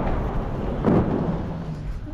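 Artillery shelling: the rumbling tail of one shell explosion fading, then a second boom about a second in that rumbles away.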